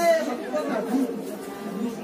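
Indistinct shouts and chatter of people at a football match: a loud call cuts off at the very start, then fainter voices calling out.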